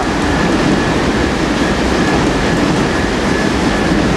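Steady, loud rumble and rushing noise of a moving vehicle, with a faint steady high whine above it.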